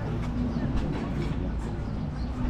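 Wind buffeting an action camera's microphone: a steady low rumble.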